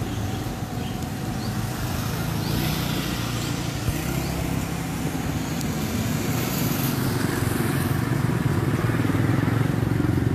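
Road traffic: a steady low engine rumble of motor vehicles on the road, growing slightly louder.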